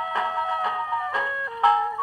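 Instrumental jazz passage from a shellac record played on an acoustic wind-up gramophone. A lead instrument holds one long note for about a second, then plays a run of short notes. There is very little bass.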